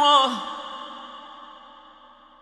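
A male Quran reciter's voice in mujawwad tajwid style ends a held note with a downward slide about half a second in. A long reverberant tail follows and fades away steadily.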